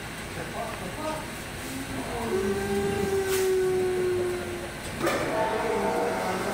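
A steady humming tone, starting about two seconds in and holding for about two and a half seconds, with a slight drop in pitch as it begins.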